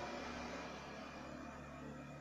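Steady low hum and hiss of background room tone, with no distinct event.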